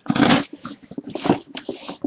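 Cardboard shipping case being opened by hand: crackly tearing and scraping of cardboard and packing material in a few short bursts, the loudest right at the start.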